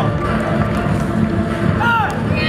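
Loud music playing steadily, with a brief shouted voice near the end.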